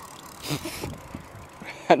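Baitcasting reel being cranked, winding in line on a small hooked fish, with a short whirring burst about half a second in.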